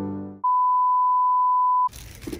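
Background music fades out, then a single steady, high, pure beep sounds for about a second and a half and cuts off abruptly: an edited-in bleep tone.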